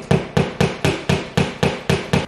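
A meat mallet used as a hammer, driving a nail into a wall with quick, even strikes, about four a second.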